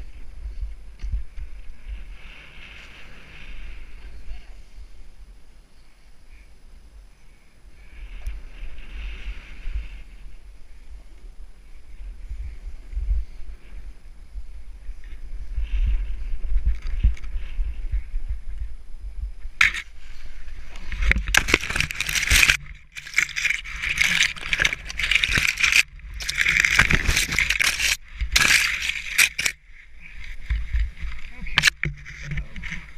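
A snowboard sliding over snow, with wind buffeting a helmet-mounted action camera's microphone as a low rumble. About two-thirds of the way in, the sound turns into loud, dense crunching and scraping as the rider goes down into deep snow and snow packs against the camera.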